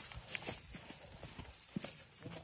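Irregular footsteps crunching on a dry dirt trail littered with dry leaves and twigs.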